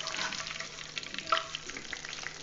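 Omapodi (gram-flour sev) strands sizzling and crackling in hot oil in a steel kadai, stirred and turned with a perforated steel skimmer.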